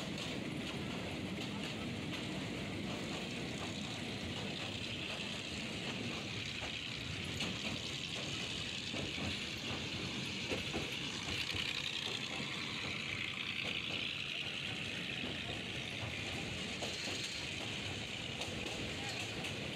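A passenger train running at speed, heard from inside the carriage: a steady rumble and rattle of the wheels on the track, with scattered light clicks.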